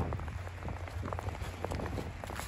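Footsteps crunching through a thin layer of snow over dry fallen leaves, an irregular crackle with each step.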